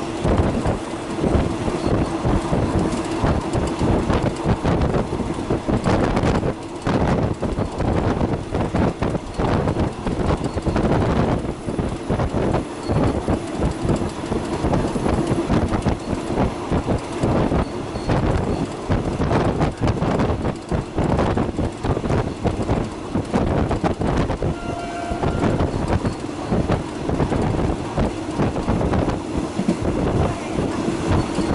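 Passenger train running along the track, heard from inside the carriage: a continuous, dense rattle of wheels and carriage on the rails, with a steady low tone at the start and again near the end.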